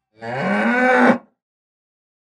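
A cow mooing once, a single call about a second long that drops in pitch at the end.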